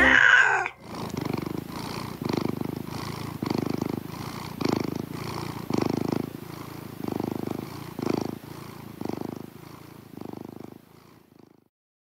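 A domestic cat purring in a steady rhythm of breaths, about one swell a second, fading out near the end. At the very start a short chiming music jingle ends.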